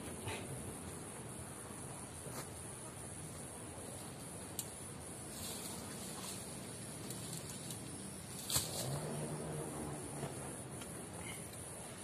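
Forest ambience dominated by a steady, high-pitched insect drone. Scattered light rustles and knocks of brush and wood being handled, with a sharper snap or knock about eight and a half seconds in.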